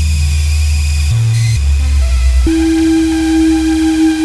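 Buchla modular synthesizer, sequenced by a 248r Multiple Arbiter, playing steady electronic tones that step from one low bass pitch to another about every half second to a second. About two and a half seconds in, a higher note is held.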